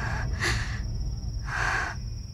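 A person breathing audibly in the quiet between lines: a short sharp breath about half a second in, then a longer one near the end, over a steady low rumble.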